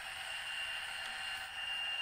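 Model diesel locomotive's WOWSound decoder playing its prime-mover sound through the model's small speaker, running steadily in notch four at speed step 20, just after notching up. A thin steady whine runs underneath.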